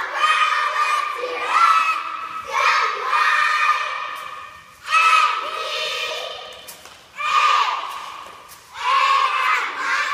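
A squad of young girls shouting a cheer together, in loud chanted phrases about every two seconds, echoing in a gymnasium.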